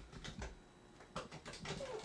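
Faint clicks and small metallic scrapes as the oil strainer and its cover plate are worked free from the bottom of an air-cooled VW Type 1 engine case.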